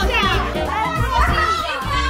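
Several people talking excitedly over one another, over background music with a steady low bass.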